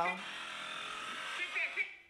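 Motorcycle engine running, played back through a phone's small speaker, which makes it thin and buzzy; it cuts off abruptly just before the end.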